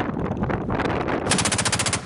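Truck-mounted anti-aircraft autocannon firing, ending in a rapid burst of about a dozen shots a second.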